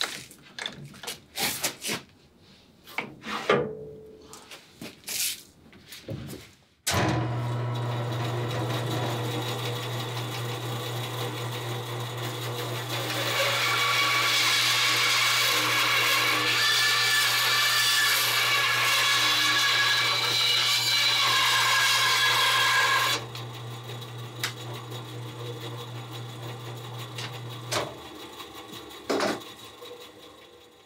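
Bandsaw cutting dense yellow cedar to rough out a scarf joint. A few knocks and clicks from a clamp and wood block being set come first. The saw starts suddenly about seven seconds in and runs steadily, then gets louder with a whine for about ten seconds while the blade is in the cut. After the cut it drops back and the motor stops a couple of seconds before the end.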